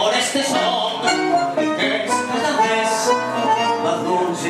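Live tango trio of piano, bandoneón and guitar playing an instrumental passage between sung verses.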